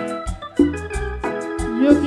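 Live band dance music with held melody notes over a pulsing bass line and a steady cymbal beat.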